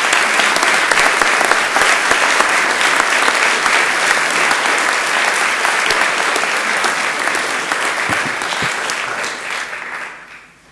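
A lecture-hall audience applauding at the end of a talk: sustained, even clapping that fades away near the end.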